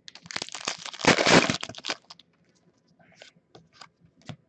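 Trading-card pack wrapper crinkling and crackling as it is handled and opened, lasting about two seconds and loudest about a second in, followed by a few light clicks of cards being handled.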